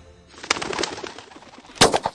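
Outdoor sound effect: birds calling, then a loud gunshot near the end.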